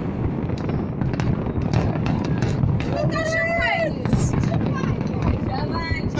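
A large fireworks display going off: a dense, continuous rumble of bursts and crackles with many sharp bangs. A person's voice calls out for about a second near the middle.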